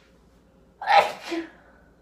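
A woman sneezing once into her sleeve: a sharp two-part burst about a second in.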